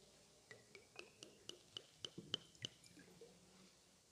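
A quick run of light metallic clinks from altar vessels being handled: about nine short ringing clinks over two seconds, roughly four a second, the loudest just past the middle.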